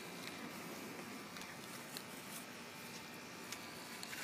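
Faint steady background hiss with a few light, scattered clicks and scrapes.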